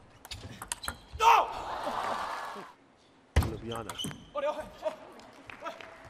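Table tennis ball clicking off bats and table in a fast rally, then about a second in a loud shout and a burst of crowd noise as the point ends. A sharp knock comes about halfway through, followed by voices.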